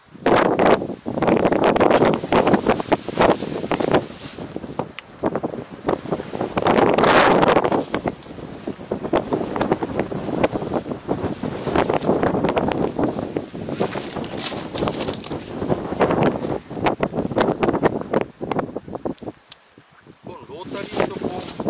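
Wind buffeting the microphone of a camera mounted on a semi-crawler tractor, in loud surging gusts with crackle, over the tractor and its rear-mounted levee-coating machine working the soil. The sound drops away sharply just before the end.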